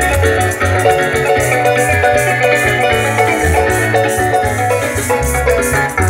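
Live Venezuelan llanero music played through PA speakers: a llanera harp picks a fast melody over its own stepping bass line, with maracas shaking a steady rhythm.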